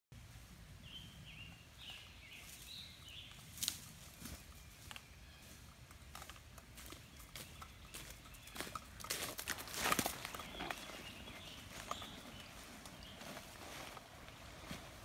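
Footsteps on dry leaf litter, scattered at first, then growing louder and closer together as the walker nears, loudest about nine to ten seconds in.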